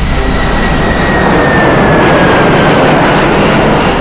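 Jet airliner passing by: a loud rushing engine noise that swells toward the middle, with a thin whine that slides slowly down in pitch.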